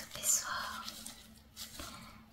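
A woman whispering close to the microphone, in breathy bursts.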